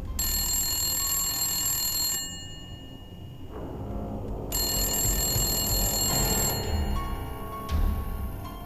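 Wall-mounted push-button telephone ringing twice, each ring about two seconds long with a pause of about two seconds between, over low background music.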